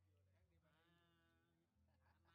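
Near silence with a steady low hum, and about halfway through a faint, drawn-out, voice-like call lasting about a second.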